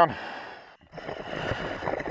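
Scuba diver's breathing through the regulator as he goes back under: a short breath that fades out, a brief pause, then about a second and a half of rushing noise.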